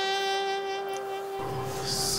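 Background music score: one long held horn-like note, steady in pitch. A low rumble comes in about one and a half seconds in, and a short hiss sounds near the end.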